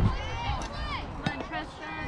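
Young ballplayers' voices calling and chattering across the field in short, high-pitched shouts, over a low rumble.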